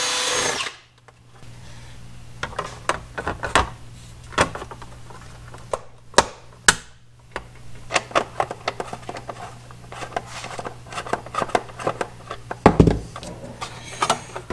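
A power drill running steadily and stopping under a second in, followed by scattered clicks and knocks of hardware and plastic housing being handled, over a low steady hum.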